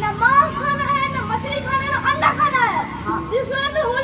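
Speech only: a boy speaking, with his pitch rising and falling.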